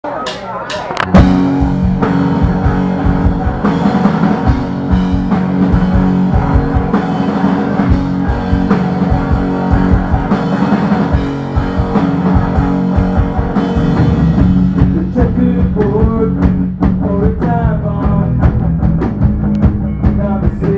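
Live rock band playing an instrumental passage: electric guitar chords and a drum kit, coming in all at once about a second in and carrying on at full volume.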